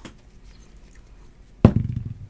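A metal twelve-sided die thrown onto a matted tabletop: after a second and a half of quiet, it lands with one sharp knock and tumbles briefly with a few quick smaller clicks.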